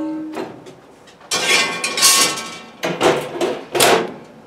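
A cast iron skillet rings after being knocked, then scrapes as it is slid into a cookstove oven. Three sharp metal clanks follow near the end as the enamelled oven door is swung shut and latched.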